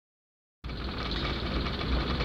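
Cabin noise inside a moving van or truck: a steady low engine drone with road noise, starting about half a second in.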